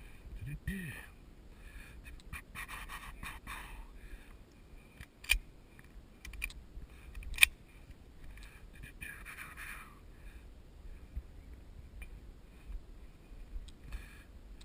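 Hi-Point .45 ACP pistol being handled between strings of fire: rustling with two sharp clicks about two seconds apart, the second louder.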